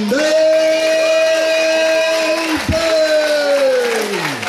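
A ring announcer's voice drawing out a long held vowel for about two and a half seconds, then, after a brief break, a second held note that falls in pitch as it dies away, the drawn-out calling of the winner's name.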